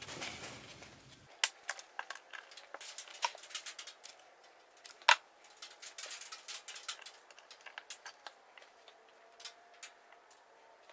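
Scattered light clicks and taps of small tools and wires being handled on a wooden workbench while setting up to solder, with one sharper click about five seconds in.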